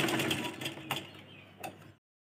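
Deepa sewing machine stitching at a fast, even rate, then slowing down and stopping within about a second and a half, with a couple of sharp clicks as it stops.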